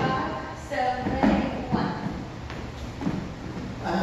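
Dancers' footsteps on a wooden floor during a Lindy Hop partner move: shoes stepping and sliding, with a few short thuds, the clearest a little over a second in.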